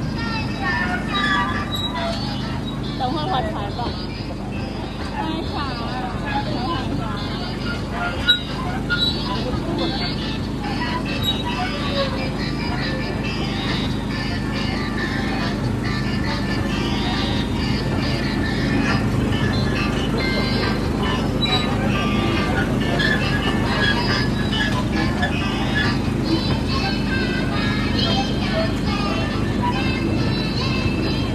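Steady low hum of a small sightseeing train running, with indistinct voices and music over it.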